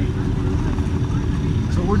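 Steady low engine rumble of a running vehicle, continuous and unchanging.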